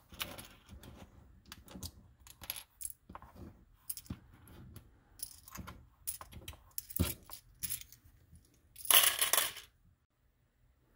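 Loose plastic Lego bricks clicking and clattering as they are picked through and sorted by hand on a cutting mat, in many small irregular clicks, with a longer, louder clatter of pieces near the end.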